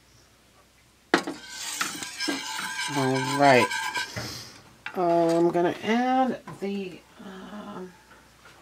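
A metal wire whisk clatters against the pan with a sudden ringing clang about a second in, followed by a voice making drawn-out, wordless sounds.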